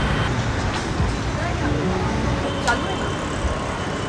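Busy street traffic: auto-rickshaws and a truck driving past, with engines running under a steady road noise.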